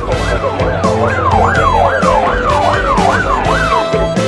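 A siren yelping fast, its pitch rising and falling about two and a half times a second, over background music. It starts just after the beginning and stops shortly before the end.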